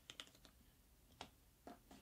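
Faint crinkles and clicks of thick paper being folded and pressed into a crease by hand: a quick cluster at the start, one about a second in, and two more near the end.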